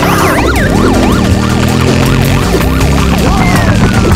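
Police siren in a fast yelp, rising and falling about three times a second, over a sustained low rumble. Near the end a single high tone sets in and slowly falls.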